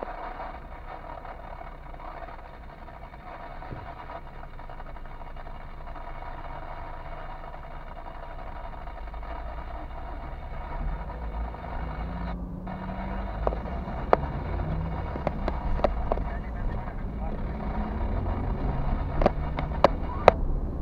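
Car engine heard from inside the cabin, running low and steady at a standstill, then picking up and rising in pitch as the car pulls away about halfway through. A few sharp clicks come in the second half.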